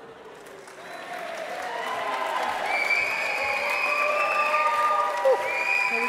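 A large audience applauding, swelling up about a second in and holding loud, with voices calling out over the clapping.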